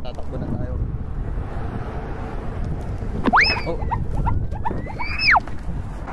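Wind rumbling on the microphone. A little over three seconds in, a loud whistling tone shoots up in pitch, slides down, climbs back up and then drops away about two seconds later.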